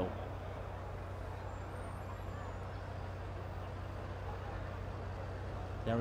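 Steady outdoor background noise: a low, even rumble with a constant hum underneath and no distinct events.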